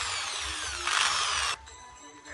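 Handheld electric drill running under the trigger, its motor whine sliding down in pitch. It gets louder about a second in, then cuts off suddenly.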